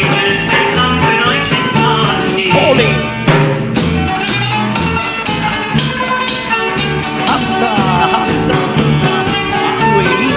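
A band playing an instrumental passage of a song, with a steady bass line under sustained melody notes and a few sliding notes.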